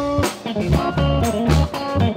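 A funk band playing live: electric guitar over electric bass and drum kit, with a note sliding up about a second in.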